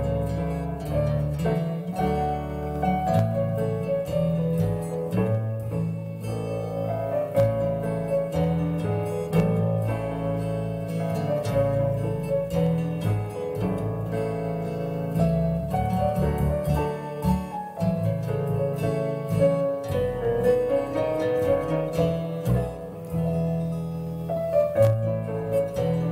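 Piano playing a lullaby: a melody over held bass notes.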